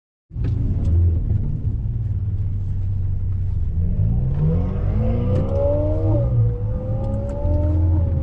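Ferrari 488 Spider's twin-turbo V8 heard from inside the cabin under way: a low rumble whose note climbs as the car accelerates, dips briefly about six seconds in, then holds steadier.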